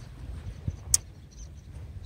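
Low steady rumble of outdoor background noise, with one sharp click about a second in.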